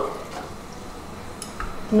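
Quiet kitchen handling noise, with a couple of faint taps about a second and a half in, as a small bowl of soaked split mung beans is handled over the cooker.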